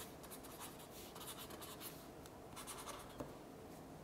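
Faint scratching of a pen writing on paper in short strokes, thinning out after about two and a half seconds.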